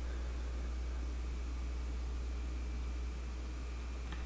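Room tone: a steady low hum under a faint even hiss, with no distinct sound.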